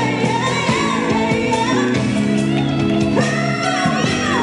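Female lead vocalist singing live with a band of keyboards, electric guitar and bass guitar, the voice gliding through runs and then holding a long note near the end.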